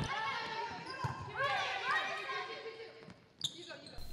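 Volleyball practice in a gym: players' voices calling out, with a volleyball struck sharply once near the end.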